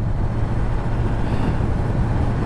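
Honda CBR1000RR sportbike's inline-four engine running steadily while cruising at about 35 mph, a constant low hum with wind and road noise over it.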